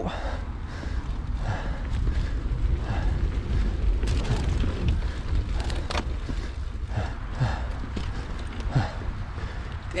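Mountain bike riding over a dirt singletrack: wind rushing over the camera microphone and the tyres rumbling on the ground. The bike rattles and knocks over bumps, with a few sharp clicks about four and six seconds in.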